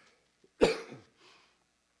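A man coughs once, sharply, a little over half a second in.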